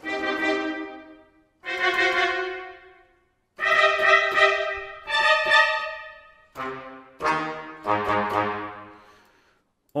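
Sampled orchestral brass section from the Project SAM Orchestral Essentials library, played from a keyboard: a run of about seven short, accented brass chords, each ringing out into reverb before the next, with a quick cluster of repeated hits in the middle.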